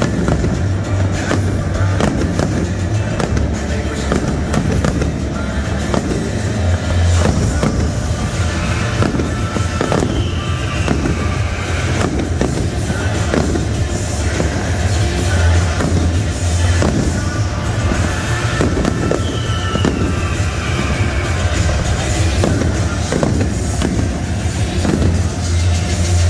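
Aerial fireworks exploding in rapid succession, a dense run of booms and crackles, with music playing over the stadium loudspeakers.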